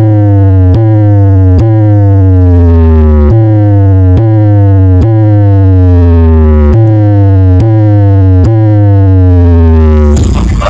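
Electronic DJ sound-check track played very loud through a large sound system: a siren-like synth tone slides downward in pitch and restarts a little more than once a second, over a heavy deep bass note that hits again with each slide.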